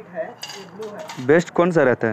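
Metal number plates clinking against each other and the table as they are handled and set down, a short metallic clatter about half a second in. A voice follows near the end.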